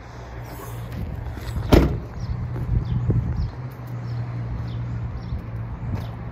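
A 2008 Honda Odyssey minivan door shutting with one heavy thump a little under two seconds in, over a steady low hum.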